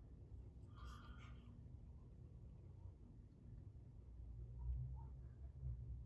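Near silence: quiet room tone with a low rumble, and one brief faint sound about a second in.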